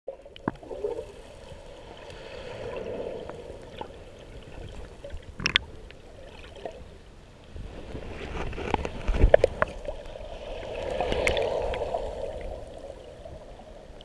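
Sea water heard by a microphone underwater: a muffled wash that swells and fades twice as waves surge past. Scattered sharp clicks and a cluster of thumps come about two-thirds of the way through.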